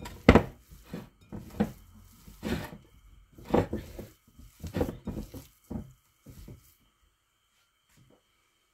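Hands kneading and squeezing a wet ground-meat mixture in a glass bowl: a string of short squishes, roughly one a second, that stops shortly before the end.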